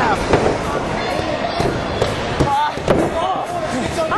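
Wrestling ring sounds: several sharp thuds of bodies hitting the ring and corner, with voices shouting in between.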